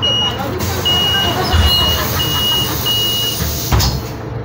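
City bus door warning signal: a steady high beep repeated about six times, roughly one and a half a second, over the idling bus's rumble, followed near the end by a short loud thud.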